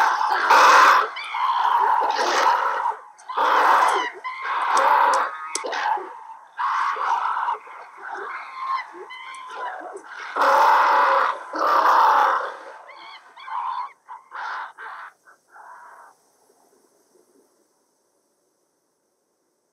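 A troop of ape-men, played by actors in primate costumes, shrieking and hooting in loud, irregular bursts. The cries thin out and die away to near silence about two seconds before the end.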